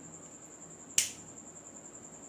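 A pocket lighter struck once, a single sharp click about a second in as it lights.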